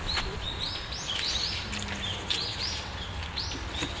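Small songbirds calling: a quick, steady run of short, high, arched chirps, several a second, over a low background rumble.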